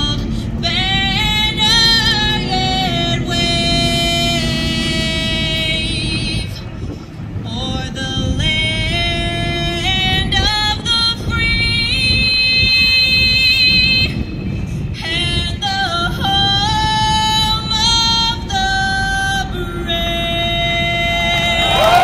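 A woman singing a slow song in long, wavering held notes, over a steady low noise.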